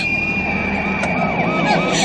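Street traffic with vehicle engines running, under a sustained high-pitched tone and a quick run of repeated rising-and-falling tones.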